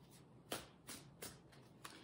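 A deck of tarot cards being shuffled by hand: about four quiet, short strokes of cards brushing and slapping against each other.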